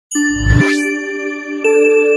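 Logo sting for a news channel's intro: a deep hit with a rising swoosh, then sustained, ringing chime-like tones, with a new chord coming in about one and a half seconds in.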